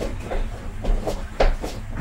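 A few light knocks and bumps of things being handled around a table; the sharpest knock comes about a second and a half in.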